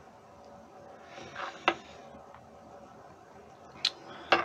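A man puffing on a tobacco pipe: a short breathy draw ending in a sharp lip smack about a second and a half in, then a faint high tick near the end.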